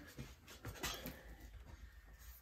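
Faint light taps and scratches of a thin wooden stick's tip dabbing tiny dots of paint onto a clear plastic sheet, over quiet room tone.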